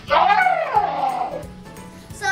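A child's drawn-out whining voice that starts sharply and falls in pitch over about a second and a half, then fades, like the plush toy being voiced protesting while it is brushed.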